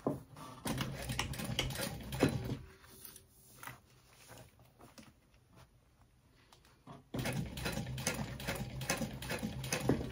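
Juki industrial sewing machine stitching a backpack gusset in two runs, one of about two seconds near the start and a longer one from about seven seconds in. Between them the fabric is shifted and rustles faintly.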